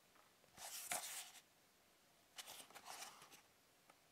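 Faint rustling of a small cardboard box being handled and turned over in the hands, fingers sliding on the cardboard, in two brief bouts: one shortly after the start and one past the middle.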